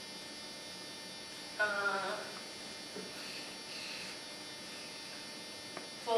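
Steady electrical hum and hiss in the recording, with a brief falling voice sound about one and a half seconds in and a faint click just before the end.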